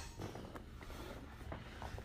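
Faint, irregular rustling and soft shuffling of grapplers' bodies and clothing against a vinyl mat, with a few small knocks over quiet room noise.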